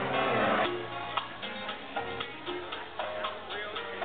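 Live music performance with sustained pitched notes over a steady, regular ticking beat.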